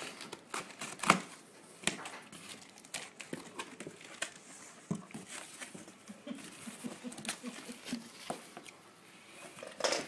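A cardboard box being opened by hand: packing tape cut and torn, flaps pulled back, and plastic bubble wrap crinkling, with irregular rustles and sharp clicks, the sharpest about a second in.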